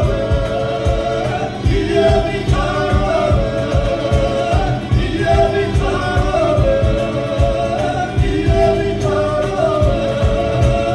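A Georgian ethnic folk ensemble singing, several voices held at different pitches at once, over a steady low beat.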